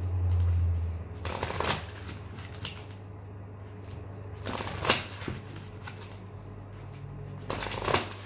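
A deck of oracle cards being shuffled by hand, in three short bursts about three seconds apart. A steady low hum runs underneath, louder during the first second.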